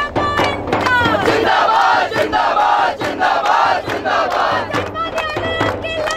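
Crowd of protesters chanting slogans together, with steady hand claps at about three to four a second. The massed voices swell into a loud group shout through the middle.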